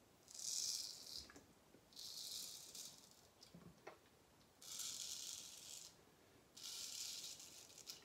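Wade & Butcher 5/8 full hollow straight razor scraping through lathered stubble on the cheek, four faint strokes of about a second each, on the second pass of the shave.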